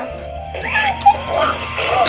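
FurReal Munchin' Rex animatronic dinosaur toy playing its electronic eating sounds through its small speaker as a toy bottle is held to its mouth, with a sharp click about halfway through.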